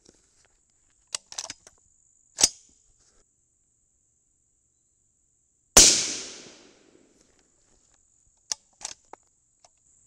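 A single rifle shot from a 22 Nosler AR-style rifle about six seconds in, its report trailing off over about a second. A few sharp clicks come before and after it.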